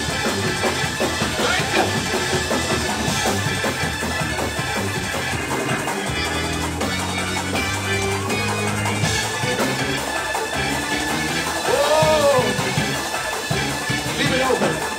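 Live gospel praise music from a church band, keyboard and drum kit playing a steady driving beat. A brief, loud rising-and-falling call stands out about twelve seconds in.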